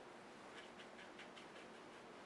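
Near silence with a quick run of about six faint, light taps in the middle: a paintbrush dabbing on wet watercolour paper.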